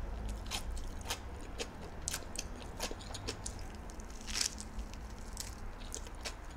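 Close-miked chewing of a nori-wrapped hot dog with egg: wet mouth sounds with irregular crisp crunches every fraction of a second, one louder crunch about four and a half seconds in.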